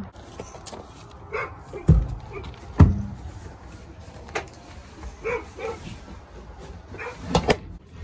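Horse being loaded into a trailer: a few heavy hoof thumps on the trailer floor, the loudest about two and three seconds in, with lighter knocks near the end.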